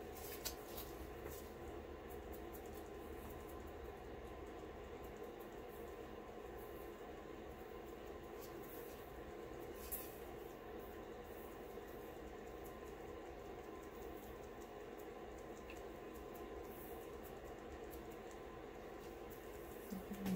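Faint steady room hum, with a single soft tap about ten seconds in.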